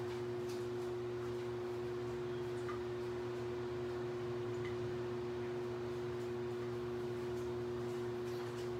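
A steady hum holding one constant tone with fainter lower tones beneath it, unchanging throughout, like a fan or electrical appliance running in a small room.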